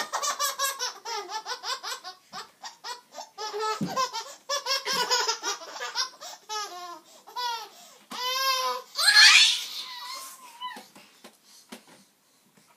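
A baby laughing in long strings of quick belly laughs and giggles, with a louder, high-pitched squeal about nine seconds in; the laughter dies away near the end.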